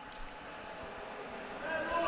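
Faint, reverberant sports-hall ambience with indistinct distant voices. A faint voice rises near the end.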